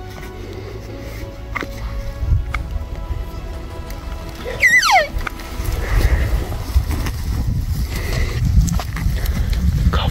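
A single short, high call sliding down in pitch about halfway through, the mew of an elk cow, over a low wind rumble on the microphone and faint background music.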